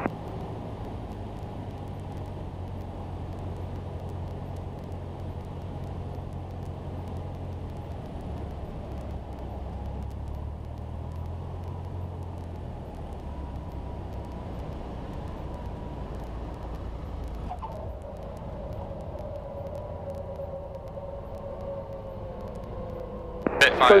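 Cessna 172's piston engine and propeller at low power, heard inside the cabin during the flare and landing roll: a steady low drone whose pitch steps down and then slowly falls as the aircraft slows on the runway.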